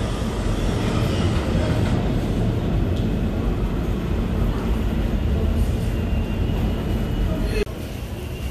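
New York City subway train on the BMT Nassau Street line (J/M/Z) pulling out and running away into the tunnel: a steady low rumble that drops off abruptly near the end.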